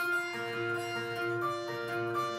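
Electric guitar playing a melodic lead lick: single picked notes that change every third to half a second and ring into one another.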